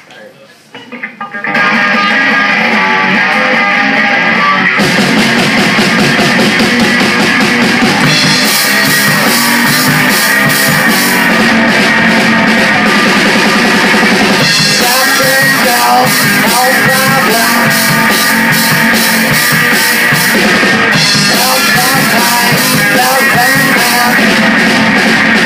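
Live rock band playing electric guitars and a drum kit as a song begins. A guitar comes in alone after a brief pause, the full band with drums joins about five seconds in, and cymbals open up a few seconds later.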